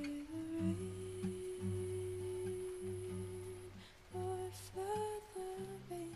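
A singer humming a wordless closing melody over a soft acoustic guitar: one long held note, then a few shorter notes near the end.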